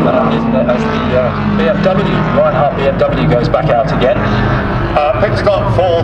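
Indistinct voices over a steady low drone of car engines running.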